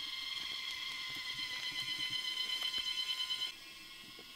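Crickets chirping: a steady high-pitched trill that grows louder and pulses in the second half. It drops suddenly to a fainter level near the end.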